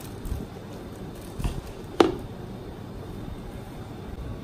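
A plastic bag and a clear plastic cup handled inside a plastic bucket, with soft plastic rustles and one sharp knock about halfway through as the cup is let go into the bucket.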